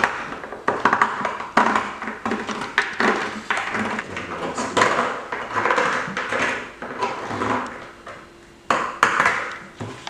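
A knife blade scraping the rough, overlapping edge of a hole cut in a black plastic bucket, shaving it smooth. It comes as a run of short, rasping strokes, roughly one to two a second.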